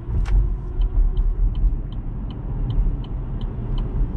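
Road and tyre rumble inside a moving car's cabin, with a click shortly after the start and then a turn signal ticking evenly, about three ticks a second, as the car prepares to turn into a lot.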